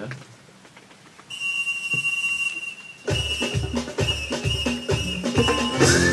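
Background music starting up: a single high held note comes in about a second in, and about three seconds in a steady drum beat of about two beats a second joins it.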